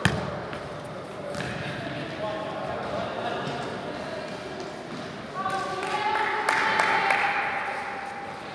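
A futsal ball kicked sharply at the start, followed by a few lighter ball knocks and players' shouts and calls echoing in a gym hall, loudest in the second half.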